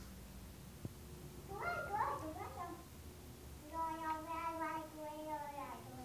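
A young child's voice: a short squealing vocal burst about a second and a half in, then a long held 'aaah' lasting about two seconds that falls in pitch at the end. A single faint click comes shortly before the first burst.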